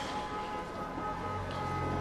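Background film-score music: two held tones sustained steadily, with a low bass tone coming in about halfway through.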